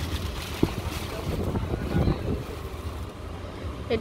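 Rustling and brushing of a woven katan dress fabric being shaken out and handled close to the microphone, a noisy wind-like sound over a steady low rumble. There is one sharp click about half a second in.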